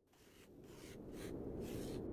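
Logo sound effect for the closing title card: a low rumble swelling up from silence, with a brighter swish about every half second.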